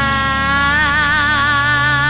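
Live rock band holding a sustained note over a steady low bass tone; about a second in, the upper note begins to waver with vibrato.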